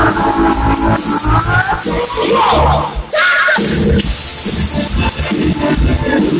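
Live band music with electric guitars and drums, played loud, with a short break about halfway through before the band comes back in.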